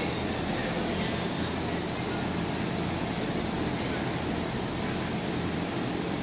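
Steady low rumble and hum of a large indoor arena, with faint distant voices of people.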